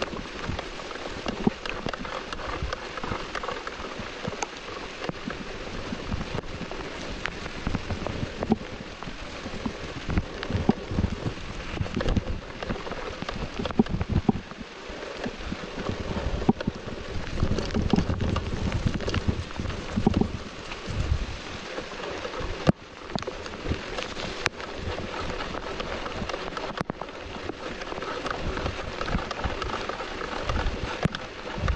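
Rain pattering on a 360 action camera as a mountain bike rolls down wet dirt singletrack, with many sharp ticks and knocks from the bike over the trail. The low rumbling grows heavier for a few seconds a little past halfway.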